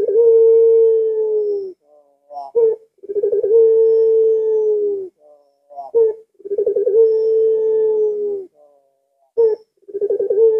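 Puter pelung (domestic ringneck dove) cooing its characteristic long call. Three times a short rising note is followed by a steady, drawn-out coo of about two seconds that wavers at its start and dips slightly at the end.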